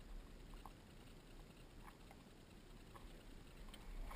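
Near silence with a few faint small clicks, from hands working a small brass cannon as a round is slid into it.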